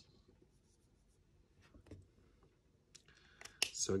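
A few faint taps and a brief scrape of a hand-held marker against the drawing board, in a quiet small room.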